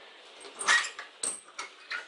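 Pet dog making several short sounds in quick succession, starting just under a second in.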